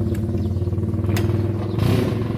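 Motorcycle engine idling steadily, with a couple of light clicks and a short rush of noise near the end.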